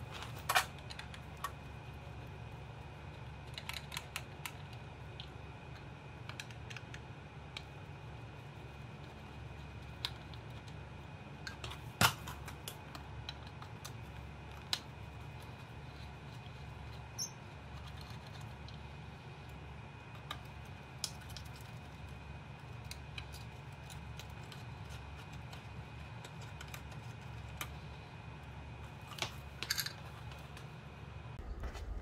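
Sparse small clicks and taps of an Allen key and hands working the mounting screws and housing of a Tesla Wall Connector, with one sharper click about twelve seconds in, over a steady low hum.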